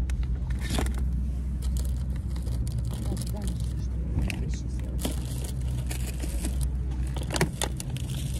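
Wind rumbling on the microphone outdoors, with scattered clicks and rustles of plastic grocery packaging being handled in a metal shopping cart.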